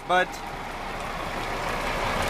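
Semi-truck idling close by: a steady engine noise that slowly grows louder.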